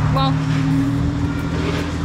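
Steady low hum of an idling motor, a few even tones held without change, with one short spoken word just after the start.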